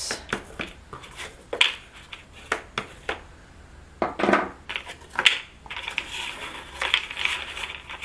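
Cardstock being handled and pressed with a folding tool: scattered taps, clicks and short rustles of paper, then a steady rustle of card being rubbed and folded over the last two seconds or so.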